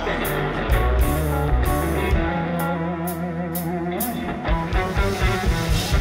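Live band playing an instrumental passage between sung lines, led by electric guitar, with a strong bass line and regular drum and cymbal hits.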